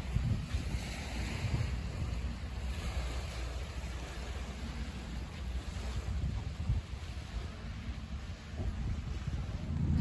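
Wind buffeting the microphone with a low, uneven rumble, over a soft wash of small lake waves on a sandy shore.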